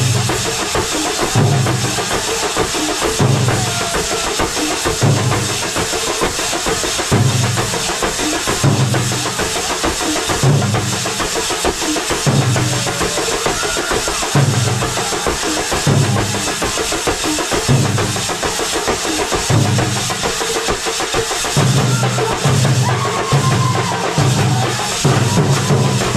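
Thambolam band playing live: big bass drums pound a steady low beat about once a second, closer together near the end, under a continuous wash of clashing cymbals.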